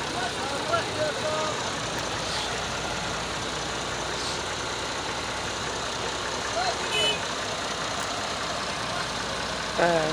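Diesel engine of a Volvo EW145B wheeled excavator idling steadily, with brief snatches of men's voices about a second in and again near seven seconds.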